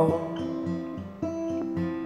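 Acoustic guitar playing a song accompaniment, chords picked and changing every half second or so, with a sharp new attack about a second in. The last sung note fades out at the very start.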